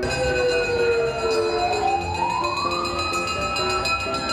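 Fire truck siren wailing: the pitch falls for about a second and a half, then rises and holds high.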